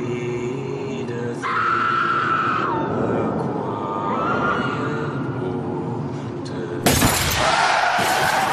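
People screaming over a dramatic music score. About seven seconds in comes a sudden loud crash of vehicles colliding, with shattering glass, that runs on past the end.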